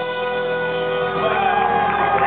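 Background music with long held chords. A gliding melody line comes in about halfway through.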